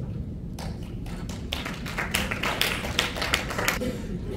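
Scattered clapping from a small audience, a handful of people clapping unevenly. It starts about half a second in and stops near the end.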